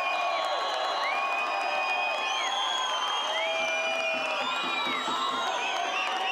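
Football crowd in the stands, cheering and shouting, with many long, high-pitched held tones overlapping, each lasting about a second.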